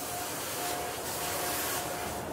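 Airbrush spraying paint onto hardbait lures in a spray booth: a steady hiss that swells a little past the middle, over a steady hum.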